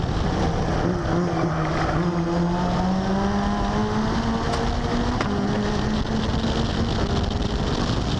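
Onboard sound of a Seven-type open-cockpit race car's engine under hard acceleration, its note climbing slowly and steadily, stepping down slightly about five seconds in and then holding, over a constant rush of wind and road noise.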